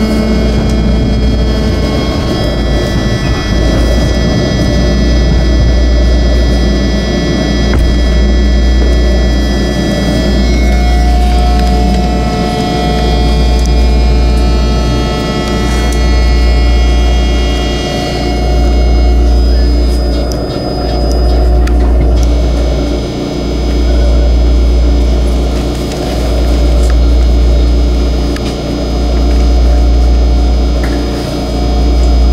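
BART train running at speed, heard from inside the car. A heavy low rumble swells and dips about every two and a half seconds under a high whine of several steady tones, and the whine fades about two-thirds of the way through.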